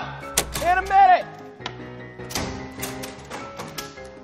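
Background music with a few light taps through it.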